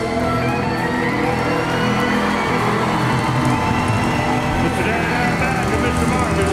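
Live country band playing a full-band number, with acoustic and electric guitars, banjo, steel guitar and drums, while the audience cheers.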